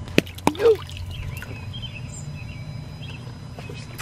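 Bath bombs dropped by hand into a shallow inflatable pool, with two short splashes near the start. Then a steady low outdoor background with faint bird chirps.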